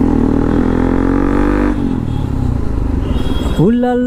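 Sport motorcycle engine revving up under acceleration, its pitch rising steadily for nearly two seconds, then cutting off sharply and dropping to a low rumble.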